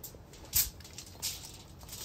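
Aluminium foil crinkling in a few short rustles as it is handled, the loudest about half a second in and another just past a second.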